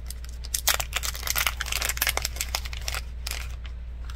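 Small plastic packet crinkling and rustling as fingers work it open, a quick run of crackles strongest through the middle.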